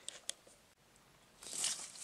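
A few faint sharp clicks, a second of dead silence, then soft rustling handling noise that grows near the end.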